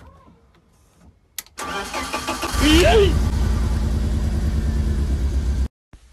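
A car engine is cranked by its starter for about a second, then catches and runs loudly with a deep, steady rumble. A voice cries out just as it fires, and the sound cuts off suddenly near the end.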